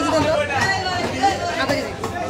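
Voices of people talking over one another: market chatter.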